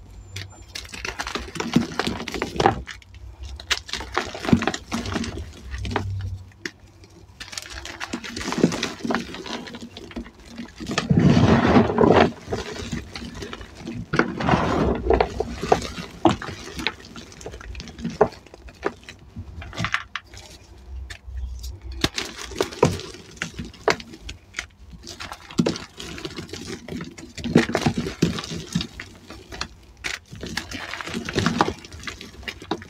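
Hands crushing and crumbling blocks of dyed, reformed gym chalk: irregular crunching and crackling, with crumbs and powder pattering down into a plastic tub. The crushing is loudest about eleven to twelve seconds in.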